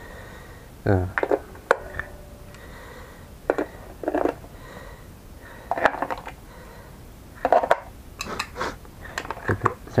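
Sharp plastic clicks and small clinks of AA batteries being handled and fitted into a toy quadcopter's handheld radio transmitter.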